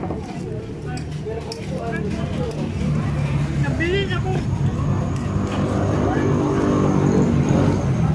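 A motor vehicle's engine running close by: a low, steady rumble that grows louder over the last few seconds, with scattered voices of people nearby.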